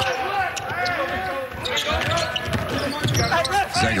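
A basketball being dribbled on a hardwood court during live play, with voices calling out in the arena.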